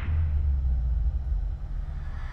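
A deep low rumble from trailer sound design. It hits at once and eases off a little after about a second and a half.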